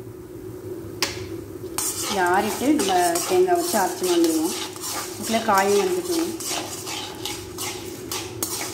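Perforated steel ladle scraping and clinking against a metal kadai as dried red chillies, coriander seeds and dal are stirred and roasted in a little oil. The strokes start about a second in and run on quickly, over a steady hum, with a voice heard in the background a few times.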